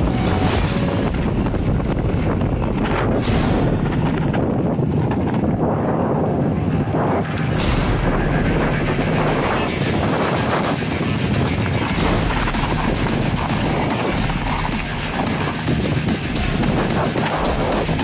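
Mountain bike rolling fast over a dirt and gravel trail, with tyre rumble and rattling from the bike over the stones, and wind buffeting the camera microphone. From about two-thirds of the way through, a run of sharp, evenly spaced clicks.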